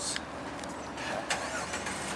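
A vehicle engine running steadily, with a couple of faint clicks about a second apart.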